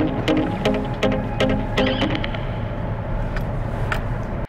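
Background music with a steady beat and a repeating pattern of notes.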